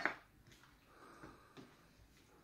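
Faint handling sounds of boiled meat being pulled off the bones in a metal bowl, with a few light ticks about a second in.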